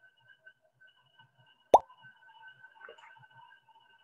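A single short, sharp pop a little before the middle, a brief ring that drops in pitch: the Quizizz lobby's sound for a new player joining the game. Faint steady tones sit underneath.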